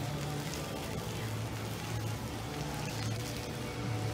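Faint background music with a steady low hum, its low notes shifting every second or so, over general outdoor ambience.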